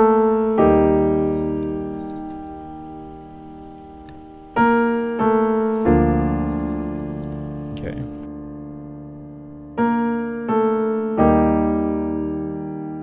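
Piano playing a slow worship-song intro in B-flat major. The right hand plays a melody in octaves, stepping down the scale, over a left-hand E-flat major chord. It comes in three short phrases of two or three notes each, and every note is held and left to ring out and fade.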